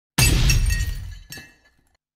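Glass-shattering sound effect: a sudden crash with ringing shards that fades away over about a second, followed by a smaller second clink a little past halfway.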